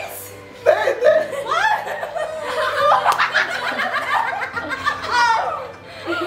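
Several people laughing together, men and women, breaking into a burst of laughter just under a second in and keeping it up for several seconds.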